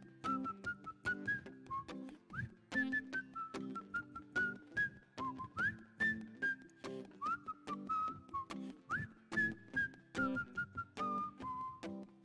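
A man whistles a melody over a strummed acoustic guitar, an instrumental break between sung verses of a folk song. The whistling comes in four phrases, each opening with an upward scoop in pitch, over a steady strumming rhythm.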